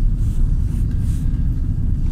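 Steady low rumble of a van heard from inside its cabin.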